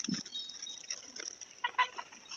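Backyard poultry calling, with a couple of short calls near the end.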